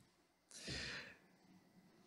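A single short breath taken by a man close to a microphone: a soft hiss lasting about half a second, starting about half a second in. Otherwise near silence.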